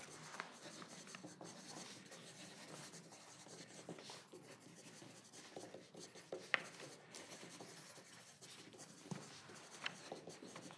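Pencils scratching faintly on paper as people write, with a brief sharp click about six and a half seconds in.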